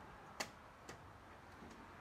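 Two light clicks about half a second apart, the second fainter, from a metal-framed window's latch and frame as it is pushed open by hand.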